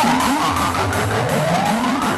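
Hardcore electronic dance music, its pitched lines sliding up and down in pitch.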